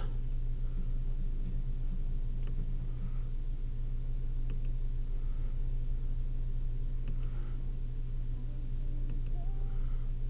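Steady low hum of a 2013 Ford Focus idling, heard from inside the cabin.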